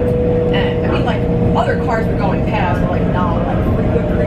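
Interior of a moving electric commuter train: steady running rumble of the wheels on the rails with a steady tone running through it, under passengers' indistinct conversation.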